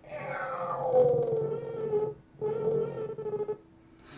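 A man's voice-acted cartoon cat meow, played back from the animation's soundtrack: a long, drawn-out wail with a little vibrato and a slowly falling pitch. It breaks off about two seconds in, and a second, shorter part follows and stops shortly before the end.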